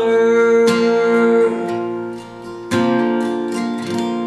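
Steel-string acoustic guitar, capoed at the third fret, strumming chords with a pick that ring out. There is a fresh stroke under a second in, the sound fades, and then a strong strum comes near three seconds, followed by lighter strokes.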